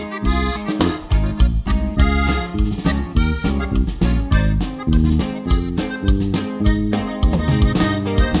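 Norteño band playing an instrumental intro: a Gabbanelli button accordion leads the melody over electric bass and drums keeping a steady beat.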